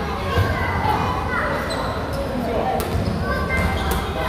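Small rubber balls bouncing on a hard gym floor, a few separate thuds, with reverberation from a large hall.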